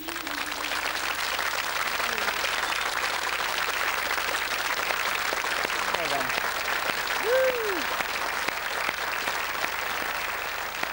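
Studio audience applauding, breaking out just as the song's last sung note ends, with a voice whooping about seven seconds in.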